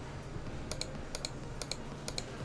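Computer mouse click sound effects: a few quick double clicks, like a cursor pressing the like, comment, share and subscribe buttons of an on-screen animation, over a low background hum.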